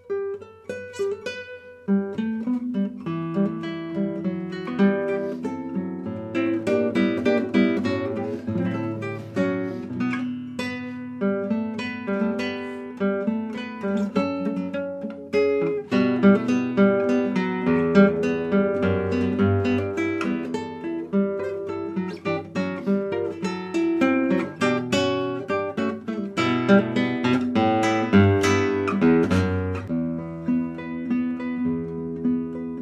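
Solo guitar playing a composed piece of plucked notes and chords. It opens softly, fills out about two seconds in, and continues with busy runs of notes over a bass line.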